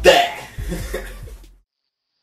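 A man's loud vocal outburst, laughing and shouting, over a hip-hop beat with deep, repeating kick drums. Everything fades out quickly about one and a half seconds in.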